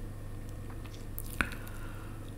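Quiet pause with a steady low hum and one short sharp click about one and a half seconds in.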